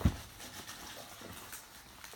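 A single short knock right at the start, then quiet room tone with a few faint ticks of handling on the table.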